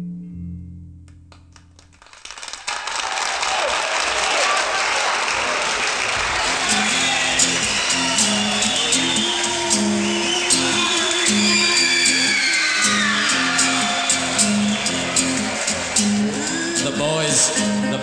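The last low notes of a rock song fade out. About two and a half seconds in, audience applause and cheering rise and carry on. From about six seconds a low instrument repeats a short figure beneath the crowd noise, as the next band starts up.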